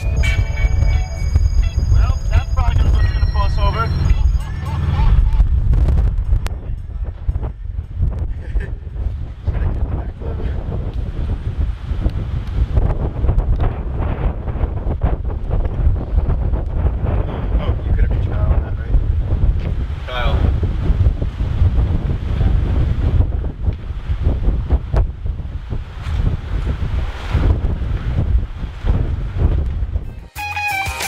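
Heavy wind buffeting on the microphone from filming out of the open back of a moving car: a constant low rumble, with vehicle noise underneath and brief muffled voices.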